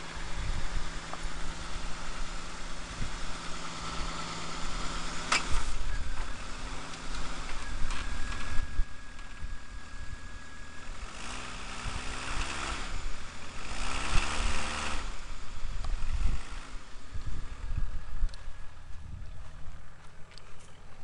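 AMC Eagle's engine idling, then revving up and back down twice about midway through. Low wind buffeting on the microphone and a single sharp knock about five seconds in.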